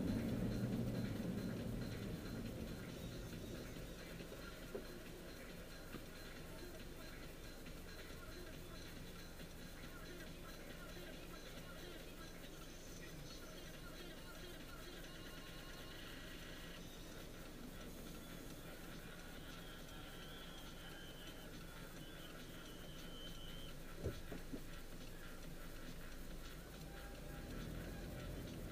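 Faint cabin noise inside a Honda crawling and waiting in traffic: a low, steady rumble, with faint music in the background and a few soft clicks.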